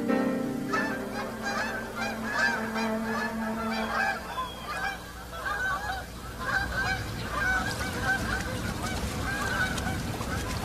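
A flock of geese honking in flight, with many short calls overlapping densely.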